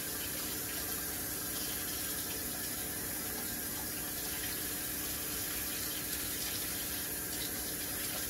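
A steady rushing noise with a faint hum under it, unchanging throughout, like running tap water or a fan.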